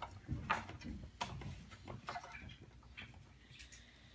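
Quiet room with a few faint, short clicks and soft knocks, most of them in the first couple of seconds.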